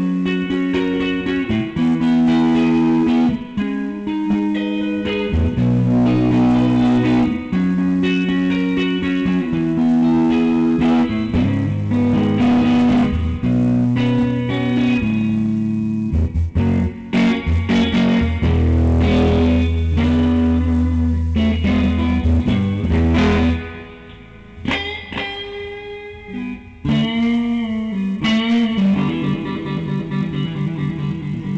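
Blue Stratocaster-style electric guitar played through an amplifier: melodic lines of single notes and chords with sustained notes. A low note rings for several seconds past the middle, then the playing turns quieter for a few seconds before picking up again.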